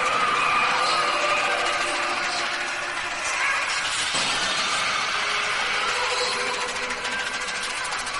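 Breakdown in a tekno track: the kick drum and bass drop out, leaving a dense, noisy, engine-like synth drone with a few held high tones and no beat.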